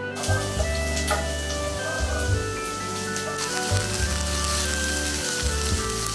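Diced onions sizzling in hot oil in a frying pan, a steady hiss under background music with a bass beat.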